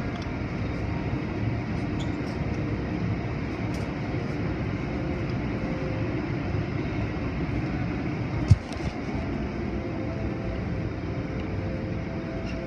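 Automatic car wash heard from inside the car: a steady rumble of water spray and spinning cloth brushes scrubbing over the windows and body. One sharp thump about eight and a half seconds in.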